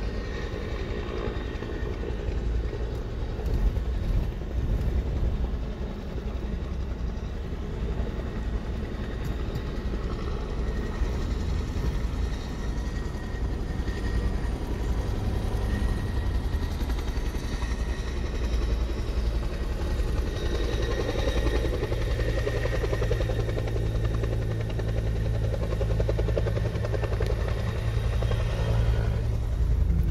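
A firefighting helicopter with a bucket slung on a long line is flying at a distance. Its rotor sound is mixed with the steady engine and road noise of the moving vehicle it is heard from.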